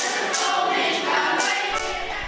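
Young people's folk choir singing together in Russian, several voices in unison.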